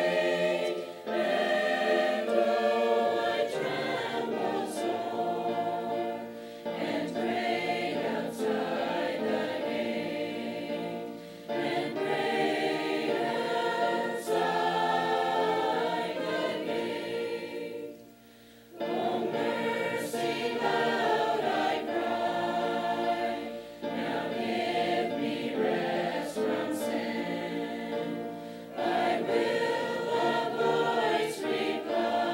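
Mixed choir of men's and women's voices singing a hymn, in phrases with a short break in the singing a little past halfway.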